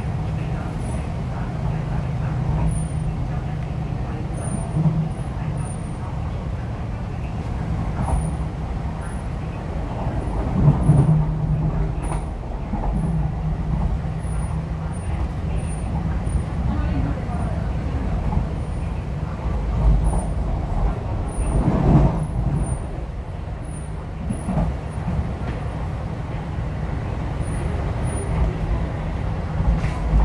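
Inside a moving MTR East Rail Line R-Train (Hyundai Rotem electric multiple unit) at running speed: steady rumble of wheels on the track with a low hum, swelling briefly twice, with short high chirps scattered through.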